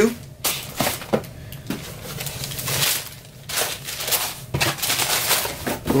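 Paper wrapping inside a sneaker box rustling and crinkling as a pair of shoes is lifted out, with several sharp crackles along the way.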